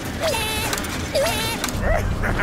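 Animated cartoon animal characters making wordless vocal cries: three short calls that dip and bend in pitch, over light background music.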